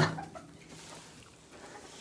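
Chickens clucking faintly.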